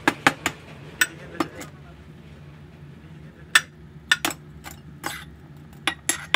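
Laboratory glassware clinking and knocking as a glass Erlenmeyer flask on a ground-glass joint is handled. There are a dozen or so sharp clinks at irregular intervals over a low steady hum.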